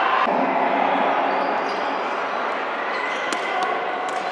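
Crowd chatter in a large sports hall, with a couple of sharp knocks of a sepak takraw ball being struck, about three and a half seconds in.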